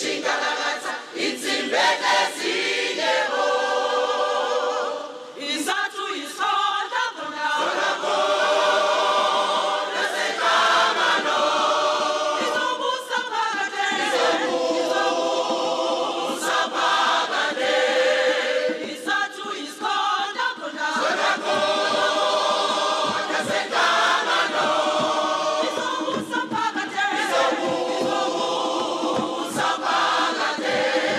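A mixed choir of men and women singing in harmony, in long sustained phrases with brief breaks between them.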